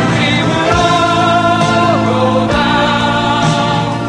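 A live band performance: several voices sing long held notes over electric guitar and bass, and the chord changes about halfway through.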